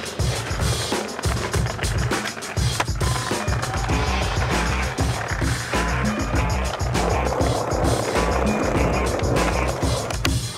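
Skateboard wheels rolling on asphalt, with repeated sharp clacks of the board's tail and landings, under background music with a steady low beat.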